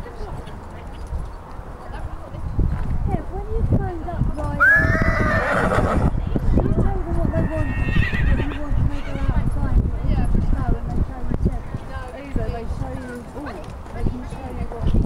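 A horse whinnying loudly about five seconds in, a call that sweeps up and then falls away over about a second and a half, over a run of hoofbeats on the arena surface.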